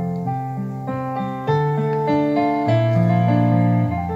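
Digital stage piano played solo through a PA loudspeaker: slow, held chords over changing bass notes, growing louder about one and a half seconds in.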